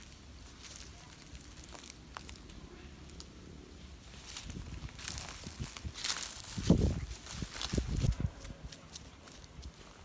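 Footsteps crunching and crackling through dry leaf litter and twigs, faint at first and louder from about halfway through, with a few low thumps among them.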